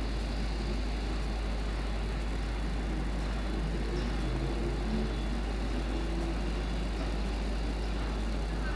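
Steady outdoor background noise: a constant low rumble and hiss with faint engine sounds of road traffic.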